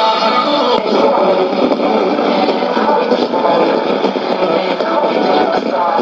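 Shortwave radio reception on a Sony ICF-2001D receiver: music stops under a second in as the set is retuned, then two stations sharing the same frequency come through together, their talk and music overlapping in a noisy, garbled mix.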